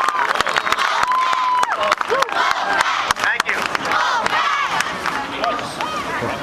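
Large crowd of fans cheering and shouting, with scattered hand claps, easing off slightly near the end.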